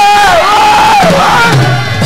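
A studio audience cheering and shouting loudly, with a man's long, drawn-out yells held over the crowd noise; the second yell falls away a little after a second in.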